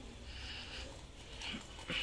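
A steel pipe wrench being set and shifted on a galvanized iron water pipe, with two sharp metal clicks near the end among faint high-pitched noises.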